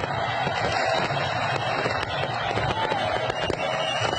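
Fireworks going off: many sharp pops and crackles over a steady, dense noisy din.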